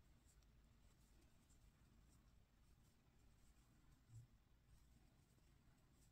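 Near silence: faint room tone with a few faint ticks and rubs of a crochet hook working yarn, and one soft low thump about four seconds in.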